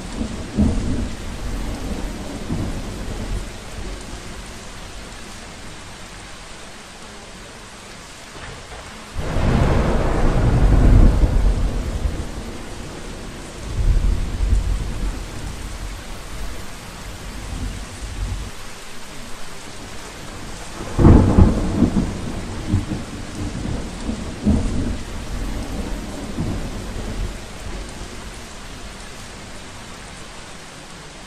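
Thunderstorm: steady rain with rolls of thunder, the biggest rumbling in about nine seconds in and again about twenty-one seconds in, with smaller rumbles between.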